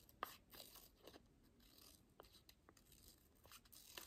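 Faint, scattered snips of scissors cutting paper, a few short clicks spread over a near-silent room.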